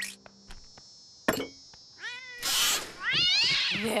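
A house cat meowing: a short meow about two seconds in, a loud hissy burst right after it, then a longer meow that rises and falls in pitch near the end. A couple of sharp clicks come before the first meow.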